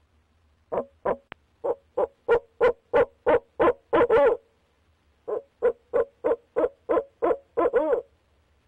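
Male barred owl hooting: two runs of rapid hoots, about three a second, each ending in a longer drawn-out note.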